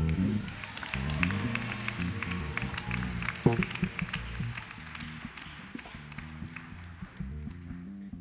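Audience applause fading away over an electric bass and piano playing low, stepping gospel chords. The clapping thins out over the last couple of seconds, and a single sharp hit stands out about three and a half seconds in.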